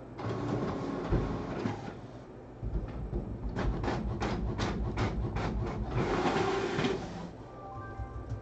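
Handling noises: rustling, then a fast run of about a dozen clicks, about five a second, and more rustling near the end.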